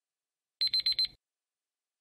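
Countdown timer alarm sound effect: four quick high electronic beeps in about half a second, marking that the time is up.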